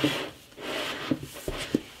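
A hardcover book and a magazine being handled, their covers and pages rubbing and sliding against each other in two short stretches, followed by a few light taps.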